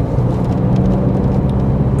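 Car driving, heard from inside the cabin: a steady low hum of engine and road noise.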